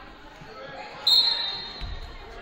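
A referee's whistle gives one short, high-pitched blast about halfway through, echoing in the gym, over faint voices. A basketball thuds on the court near the end.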